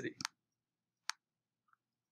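Sharp computer mouse clicks in a quiet room: two quick clicks just after the start, a single click about a second in, and a fainter tick near the end.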